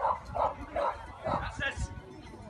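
A Shetland sheepdog barking repeatedly in short, quick yips, about five in two seconds, as it runs the agility course.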